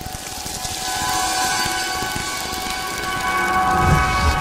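Sound design for an animated promo bumper: a hissing, crackling swell builds up, joined about a second in by a sustained, shimmering synth chord, with a low thump near the end as the logo text lands.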